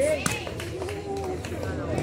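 A ball hit at the very start, then spectators' voices and calls in the background of an outdoor volleyball court.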